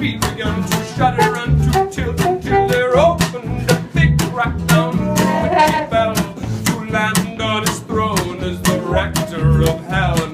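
Live acoustic band music: an acoustic guitar strummed in a steady rhythm, with a trumpet and a man's singing voice over it.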